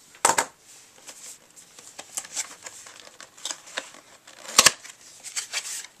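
Cardboard CPU retail box being handled and its factory seal broken open: scattered clicks, scrapes and crinkles of card and paper, with a sharp knock about four and a half seconds in.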